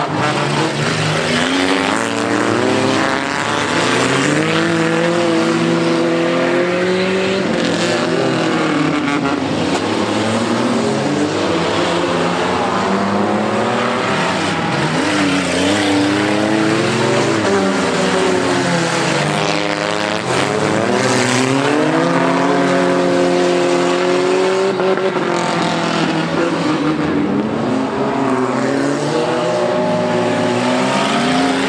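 Several figure-8 race cars' engines revving hard at once, their pitch rising and falling over and over as the cars accelerate and lift around the dirt track.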